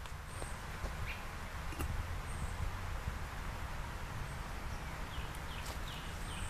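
Outdoor yard ambience: birds chirping with short, quick descending calls, strongest near the end, over a steady low rumble. A few scattered footsteps and rustles in dry leaf litter.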